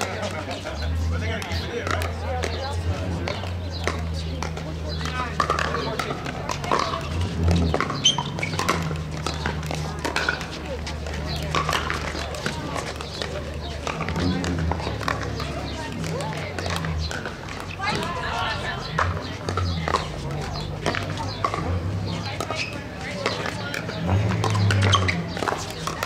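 Pickleball paddles hitting a plastic ball in rallies, sharp pops scattered throughout, over indistinct chatter from players and spectators.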